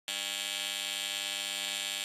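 AC TIG welding arc buzzing steadily on aluminum.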